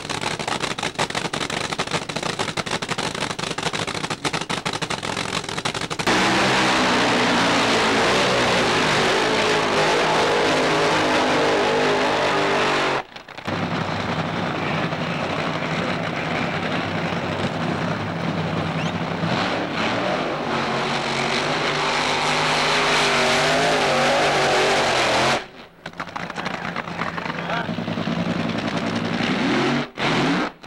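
Drag-racing engines at close range: a race car's engine crackles at idle in the pits, then is revved hard and much louder about six seconds in. After a break, engines run at the starting line, and near the end a supercharged funny car's engine rises in pitch as it spins its tyres in a burnout.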